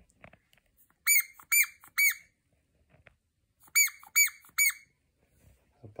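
Rubber squeaker in a dog toy squeezed in two quick runs of three short, high squeaks, about a second in and again near four seconds in.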